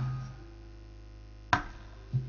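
Gamelan accompaniment of a wayang golek show in a pause: a low drum tone dies away at the start and a faint held note lingers. About one and a half seconds in comes a single sharp knock with a short ring, typical of the puppeteer's wooden knocker striking the puppet chest.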